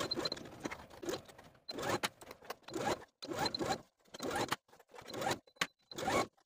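Domestic sewing machine stitching a seam through linen, heard as about eight short bursts separated by silence.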